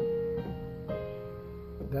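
Yamaha Portable Grand digital keyboard on a piano voice playing a held chord, with new notes struck about half a second and one second in and left ringing.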